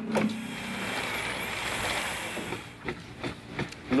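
Construction-site noise: a steady rushing sound for about two and a half seconds, then a few sharp knocks near the end.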